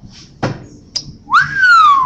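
A hand whistle blown into cupped, clasped hands: one note that swoops up quickly, then slides slowly down in pitch for under a second. Two short clicks come before it.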